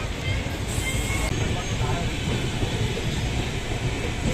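Steady rumble of a moving passenger train, its wheels and coaches running on the track, heard from on board, with faint voices mixed in.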